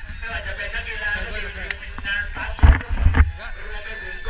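Indistinct men's voices talking and calling out on a football pitch, several at once, over a low rumble on a moving body-worn camera's microphone that swells into two loud bursts a little after halfway.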